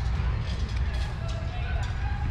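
Unsteady low rumble typical of wind buffeting the microphone, under faint voices in the background.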